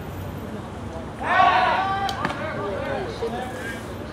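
A person's loud, drawn-out shout from the crowd about a second in, followed by quieter calling out, with one short sharp click just after the shout.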